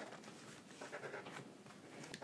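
Faint squeak and scratch of black felt-tip markers drawing small circles on paper.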